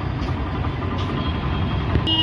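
Steady low engine rumble of street traffic, with an auto-rickshaw running past.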